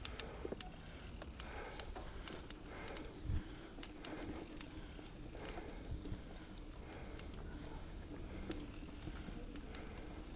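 Mountain bike ridden over a dirt singletrack, picked up by a GoPro's built-in microphone: tyres on dirt over a steady low rumble, with irregular clicks and rattles from the bike over bumps and a heavier knock about three seconds in.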